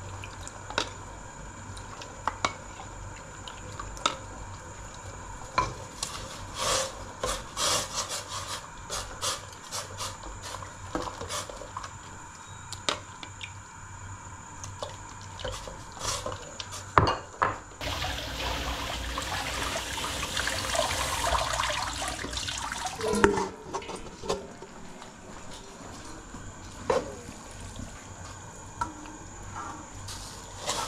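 A metal ladle clinking against a steel pot and a ceramic bowl as a milky liquid is ladled and stirred, with light sloshing. A few seconds of steady running water come about two-thirds of the way through.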